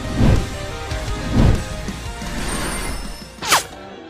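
Logo-intro music sting: a sustained musical bed hit by two heavy low impacts about a second apart, then a short sweep rising sharply in pitch shortly before the end.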